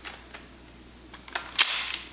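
Mossberg 500 pump shotgun's barrel nut being screwed down on the magazine tube, with a few light metal clicks. Near the end comes a louder sharp metal clack with a brief scrape.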